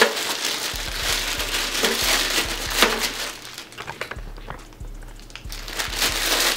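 A plastic packaging bag crinkling and rustling as it is handled and opened, with many small crackles and clicks.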